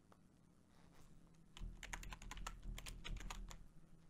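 Computer keyboard typing: a quick run of about a dozen keystrokes starting about a second and a half in and lasting about two seconds.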